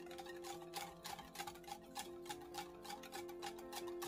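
Wire whisk beating liquid batter in a glass bowl, its wires clicking against the glass about four times a second, over soft background music.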